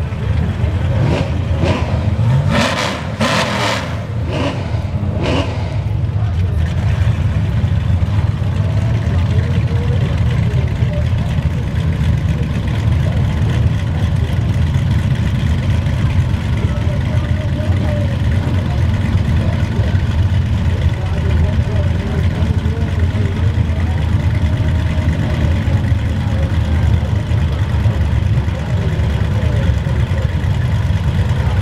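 Drag race car engines: a burnout ends with the engine revving in several short, sharp bursts over the first few seconds, then two cars' engines idle loudly and steadily at the starting line.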